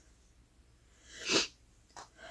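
A woman's single short sneeze, about a second and a half in.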